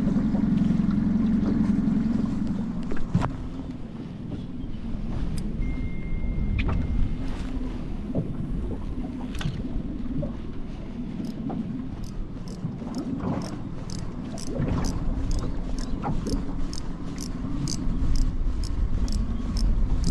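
Wind buffeting the microphone and water lapping against a small boat. From about eleven seconds in, a spinning reel is cranked on the retrieve, its handle ticking evenly about three times a second.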